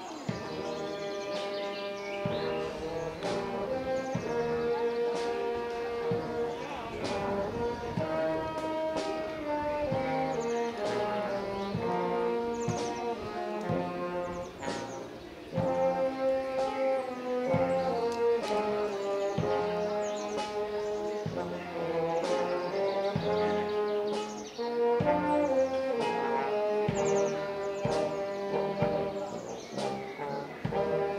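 Brass marching band with sousaphone and bass drum playing as it marches in: held brass notes carrying a tune over regular drum strokes.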